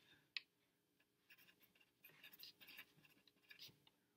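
Pencil writing on lined paper, faint scratching strokes in short runs. A single sharp tap comes about half a second in, then a pause before the writing strokes resume.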